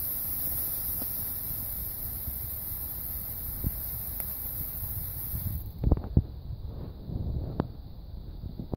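Comet Mega Lights class 1 ground fountain hissing steadily as it sprays sparks, then cutting off about five and a half seconds in as it burns out. A few sharp thumps follow.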